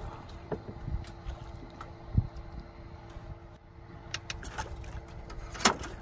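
Scattered knocks and clicks from gear being handled in a small aluminium boat, over a low rumble and a faint steady hum. There is a dull thump about two seconds in, and a sharp knock near the end is the loudest sound.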